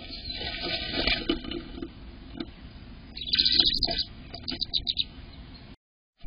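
Tree swallow chirping inside a wooden nest box, with rustling in the dry grass nest. There are bursts of calls about a second in and again about three seconds in, then a quick run of short chirps. The sound cuts out just before the end.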